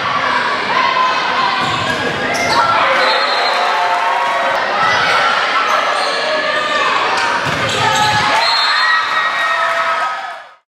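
Volleyball rally in an echoing gymnasium: many voices of players and spectators shouting and calling over one another, with sharp thuds of the ball being struck.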